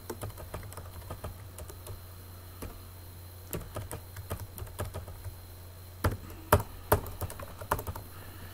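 Computer keyboard being typed on: a run of quick key clicks, with a few louder keystrokes in the second half, over a low steady hum.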